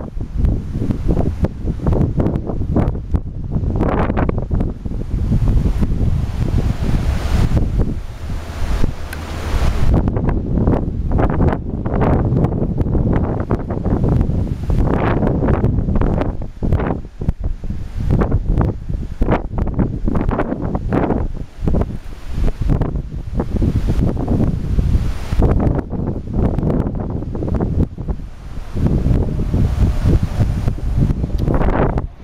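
Strong, gusty wind buffeting the camera's microphone: a loud, low rumble that swells and drops in irregular gusts.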